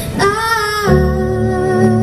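A woman singing a held, wordless note live, accompanied by stage keyboard and cello, with low sustained notes coming in about a second in.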